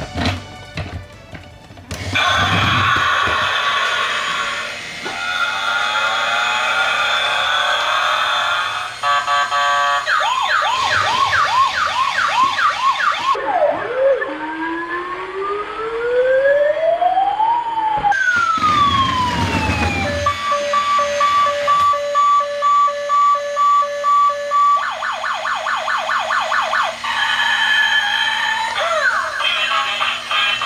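A battery-powered toy police car's electronic siren sound effects from its small built-in speaker, cycling through several patterns. Fast warbling sirens come first, then a slow wail that rises and falls about halfway through, then steady on-off beeping before the fast warbles return.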